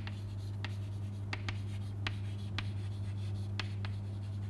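White chalk writing on a chalkboard: a string of short sharp taps and scratches as the letters are formed stroke by stroke, over a steady low hum.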